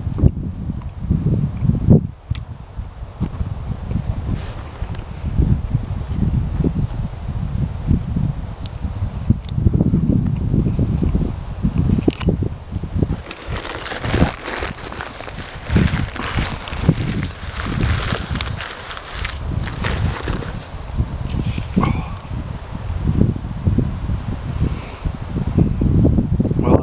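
Wind buffeting the microphone in uneven low gusts, with tree leaves and branches rustling. From about thirteen to twenty-one seconds in, the rustling grows louder and hissier, with many small crackles.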